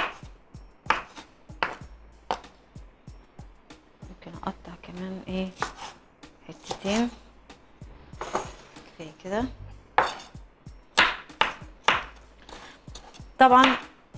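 Santoku knife finely dicing green pepper on a wooden cutting board: a series of irregular sharp knife strikes against the board, quickening into a run of strokes near the end.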